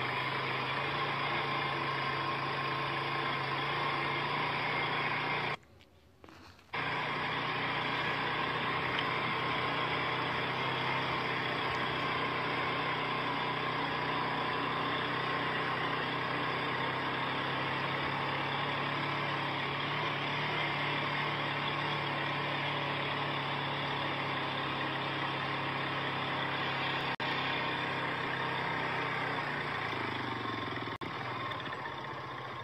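Vehicle engine running at a steady, even hum. It cuts out for about a second roughly six seconds in, then carries on unchanged.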